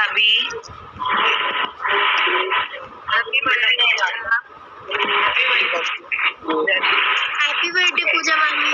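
People talking, heard through thin, band-limited video-call audio.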